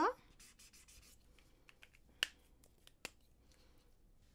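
Felt-tip marker scratching faintly on paper in short strokes, followed by two sharp clicks, the first about two seconds in and the second a second later.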